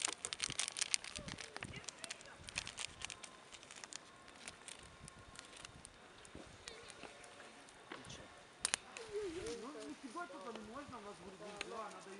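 Campfire crackling under a cauldron of boiling field porridge, with a pepper sachet crinkling as it is shaken out in the first few seconds; the crackles thin out after that, with one sharp click about two-thirds of the way through. A voice is heard in the last few seconds.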